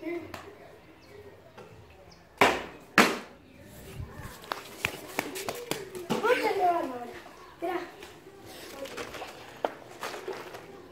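Two loud knocks about half a second apart, typical of a plastic water bottle being flipped and hitting a concrete floor, followed by scattered lighter clicks and taps. A child's wordless voice is heard briefly a little past the middle.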